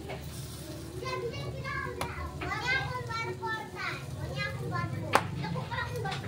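Children's voices nearby, high-pitched chatter and calls, over a steady low background hum, with a sharp click about two seconds in and a louder one near the end.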